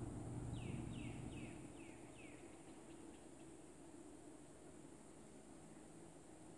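A bird calling faintly: a quick run of about five short chirps, each falling in pitch, in the first half.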